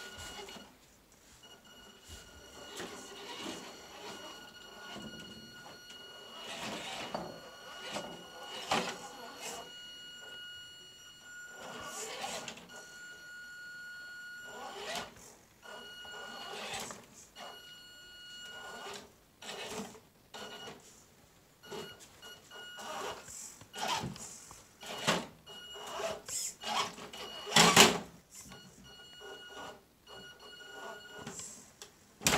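Axial RC rock crawler's small electric motor and drivetrain whining on and off as it is throttled over rocks, with knocks and scrapes of its tyres and chassis against the stones; one louder knock near the end.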